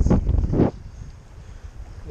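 Strong wind buffeting the microphone, loud gusty rumbling for the first moment, then dropping to a softer, steady rush of wind.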